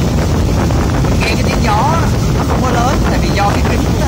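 Steady rush of wind and road noise in the open cockpit of a Mercedes-Benz SLK 350 AMG roadster driven with its roof down at highway speed, around 100 km/h, with a man's voice breaking in over it twice.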